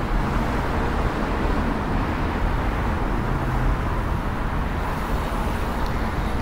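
Steady road traffic noise, a continuous rumble and hiss with no single car standing out.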